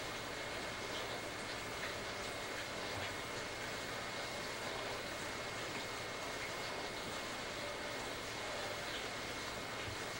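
Steady background hiss with a faint, steady high-pitched tone running through it.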